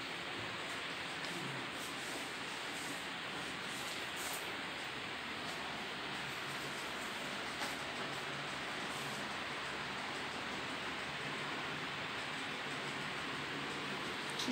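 A steady, even hiss of background noise that holds unchanged, with no distinct events in it.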